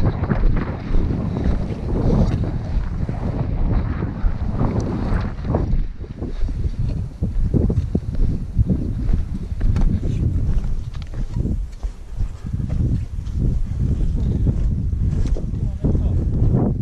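Wind buffeting the camera's microphone: a loud, gusty low rumble that keeps rising and falling.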